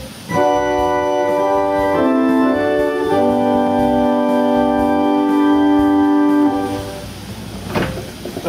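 1906 Peter Conacher tracker-action pipe organ playing its great principal chorus (open diapason, principal, fifteenth, with flutes and salicional drawn): three sustained chords, the last held for about three and a half seconds, then released and dying away. The instrument has gone years without tuning but still sounds not too badly out of tune.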